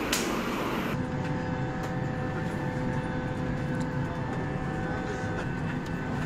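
Steady low hum of an airliner cabin at the gate, with several faint steady whining tones over it. A short click comes right at the start, and the sound changes about a second in.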